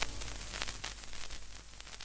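Vinyl record surface noise at the run-out of the track: steady hiss with scattered crackle clicks, slowly fading.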